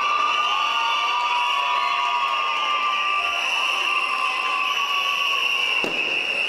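Crowd cheering, with many children screaming in one long, high-pitched scream.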